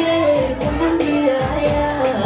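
A woman singing a Somali song into a microphone over amplified backing music with a steady beat.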